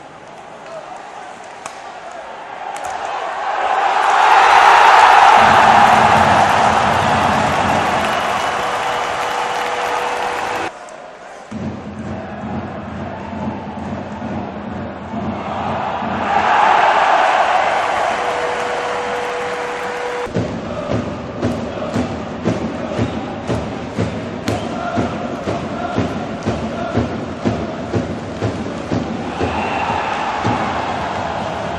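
Ice hockey arena crowd roaring at goals: one roar swells a few seconds in and cuts off abruptly about a third of the way through, and a second roar rises about halfway. In the last third, a fast, even run of sharp beats sounds under the crowd noise.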